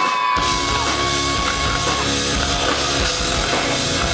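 Live rock band playing loud at full volume: drums, distorted electric guitars and bass crash in together about half a second in. A long held high note runs over the start and stops about two seconds in.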